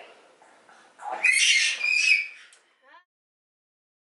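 A brief high-pitched squeal or squawk-like call about a second in, lasting under two seconds, followed by a few short rising chirps; then the sound cuts off to dead silence.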